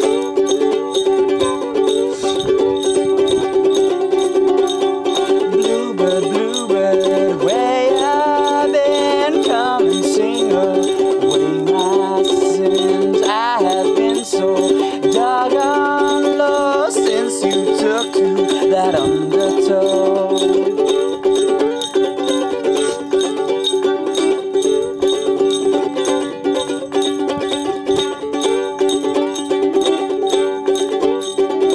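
Ukulele strummed in a fast, steady folk rhythm throughout. A man's voice sings over it from about six seconds in until about twenty seconds in.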